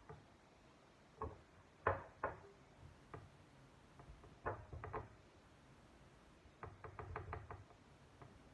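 Dull knocks on a wooden chopping board as a raw leg of lamb is handled and turned over: a few single knocks, then a quick run of about seven taps near the end.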